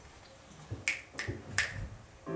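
Three sharp, short clicks, each about a third of a second after the last, over a quiet room.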